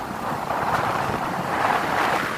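Steady wind rush over the microphone of a moving motorcycle, with the bike's running mixed in underneath.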